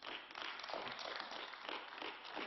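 Faint, scattered applause from members in a large parliamentary chamber, starting as a speech ends.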